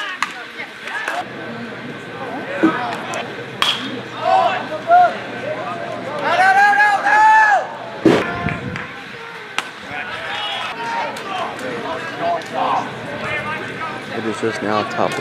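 Players and spectators shouting and calling out around the field, with a long drawn-out call about six seconds in. A few sharp knocks are heard, one near four seconds and one near eight.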